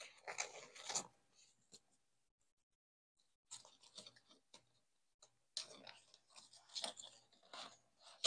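Webbing strap and padded kidney pad being handled and threaded through the metal bars of an ALICE pack frame: faint, scattered rustling and scraping in short bursts.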